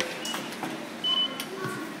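Automatic ticket gates giving short electronic beeps as IC cards are read: a high beep about a second in, then a couple of lower ones, over the background noise of a station concourse.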